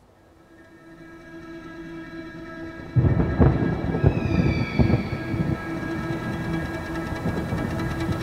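Film score and sound design: a sustained droning chord swells in from near silence, then about three seconds in a deep rumble comes in with a few low thuds, and a high tone slides downward just after.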